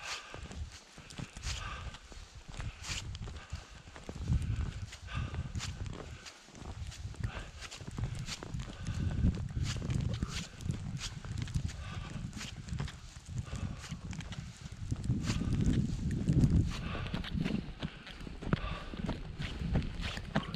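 Footsteps of a person hiking on foot through deep fresh snow, a short crunch with each step at about one step a second, over a low rumbling noise.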